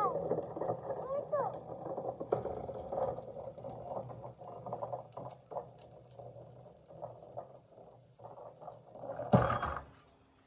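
A baby babbling and making small gliding vocal sounds, mixed with rustle and clicks from close handling. A loud bump comes near the end.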